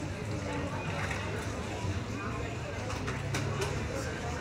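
Indistinct talking and murmur with a low steady hum, and two sharp clicks or taps about three and a half seconds in. No music is playing yet.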